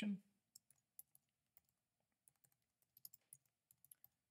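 Faint keystrokes on a computer keyboard as a short name is typed: a few spaced taps at first, then a quicker run of them after about two seconds.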